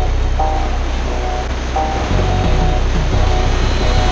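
Whitewater rapids rushing around an inflatable raft, a loud steady noise with a heavy low rumble, under background music.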